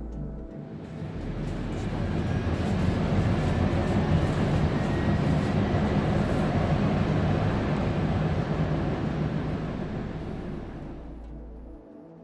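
A DART light rail train running, heard from inside the car: a dense, steady noise that fades in over the first two seconds or so and fades out near the end, over a low ambient music drone.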